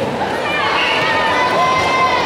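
Crowd chatter in a large sports hall, with a high-pitched call held for about a second over it in the second half.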